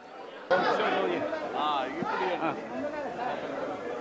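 Several voices talking over one another, with the sound jumping suddenly louder about half a second in.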